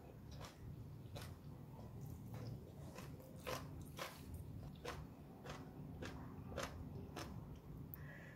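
A person chewing a mouthful of stir-fried egg noodles, faint, with soft clicks about twice a second.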